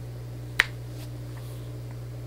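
A single short, sharp click about half a second in, over a steady low hum of room tone.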